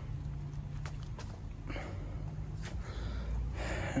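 A few faint footsteps on pavement over a low, steady hum.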